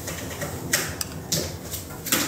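Light handling noise, a few short clicks and rustles within about a second, as sunglasses and clothing are handled close to the microphone.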